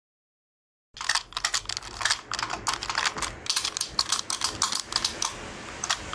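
Rapid, irregular light clicking, many clicks a second, starting about a second in and thinning out near the end.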